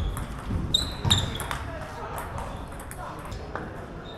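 Table tennis ball knocking back and forth between bats and table in a rally: a string of quick, sharp, irregular clicks.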